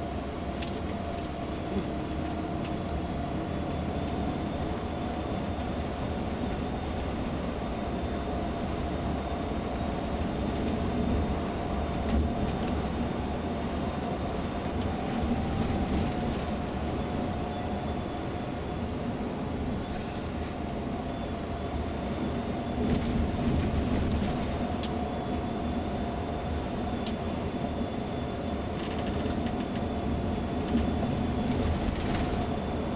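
Steady rumble of a tour coach's engine and tyre noise heard from inside the cabin at cruising speed, with a faint steady whine and a few light clicks or rattles.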